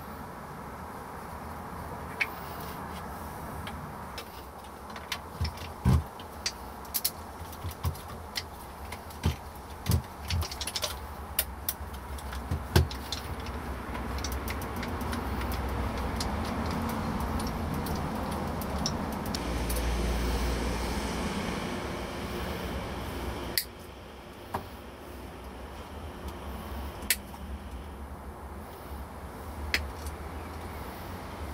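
Small clicks and clinks of a pre-wired guitar electronics harness, potentiometers and a switch, being handled and set down against the wooden guitar body, thickest in the first half. Under them runs a steady low rumble that swells in the middle and drops away suddenly about three-quarters of the way through.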